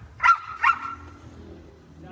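A large chained dog barking twice, about half a second apart, the second bark trailing off briefly.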